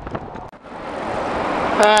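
Road traffic noise with wind over the microphone. After a sudden brief dropout about half a second in, it swells steadily louder, and a man's held "eh" comes in near the end.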